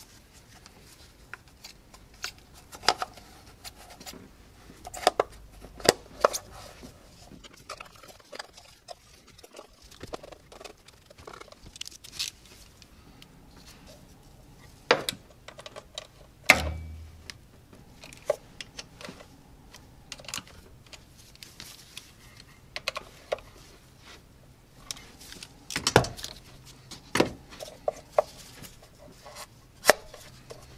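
Irregular light clicks, taps and rattles of hand tools and engine parts being handled while the ignition coil packs and their wiring are refitted, with one heavier thump a little past halfway.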